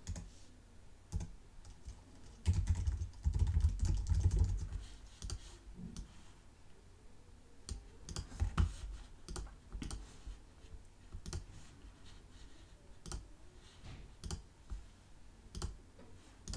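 Typing on a computer keyboard with mouse clicks: irregular scattered keystrokes and clicks as a web address is entered and formatted. The loudest part is a run of low thuds a few seconds in.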